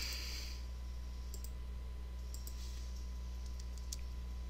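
A few faint computer-mouse clicks: one about a second and a half in, a couple a second later, and a small cluster near the end. Under them runs a steady low electrical hum.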